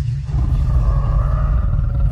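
Live concert sound heard from inside the crowd: loud bass from the PA system with fans screaming over it, a held high cry starting about a third of a second in.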